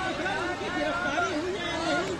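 Several people talking at once: overlapping voices of a small crowd.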